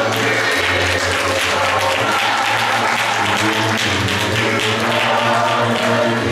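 Applause and hand-clapping from a church congregation, with the a cappella gospel choir's voices carrying on underneath.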